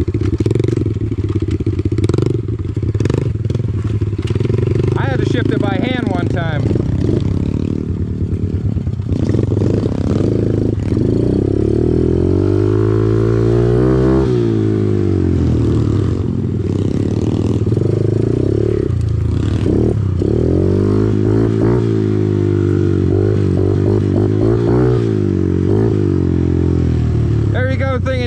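Kawasaki KLX110R pit bike's small four-stroke single with an aftermarket full exhaust, running under throttle on a dirt trail, its pitch repeatedly rising and falling as it revs up and backs off.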